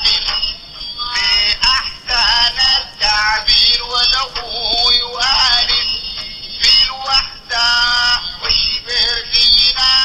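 A recording of a Sufi qasida being sung, played from a handheld device held up to a microphone and heard through a PA loudspeaker. It sounds thin and tinny, with little bass.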